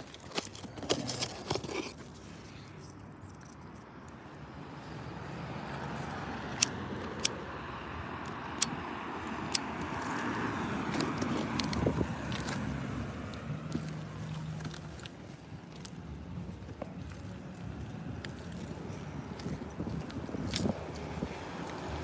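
Scattered light clicks and jingles, with a faint street hum that swells and fades near the middle, like a car passing.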